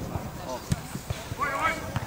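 A football struck once, a single sharp thud a little under a second in, with distant shouts from players and spectators.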